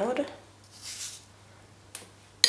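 A small kitchen knife cutting through a piece of apple: one short, soft slicing scrape about a second in, then a light tap near the end.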